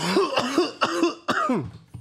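A man coughing, about four coughs in quick succession, from smoke he has just exhaled.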